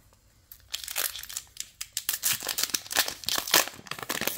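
Foil wrapper of a Yu-Gi-Oh booster pack crinkling and tearing as it is ripped open. The crackling starts about half a second in and goes on without a break.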